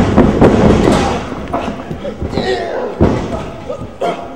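Wrestlers hitting the ring's canvas and ropes, several heavy thuds, with a live crowd shouting throughout. The loudest stretch comes in the first second.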